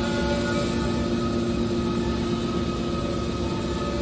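Hydraulic scrap metal baler's power unit running steadily: a continuous machine hum with several fixed whining tones that hold the same pitch throughout.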